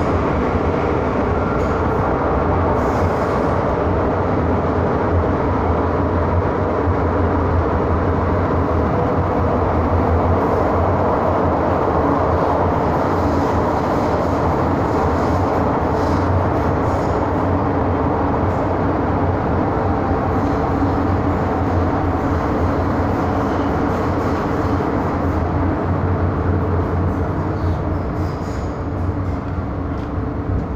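Steady running noise heard inside an MTR M-Train (Metro-Cammell electric multiple unit) car travelling through a tunnel on the Island Line: a continuous rumble of wheels on rail and the train's drive. It eases off slightly near the end.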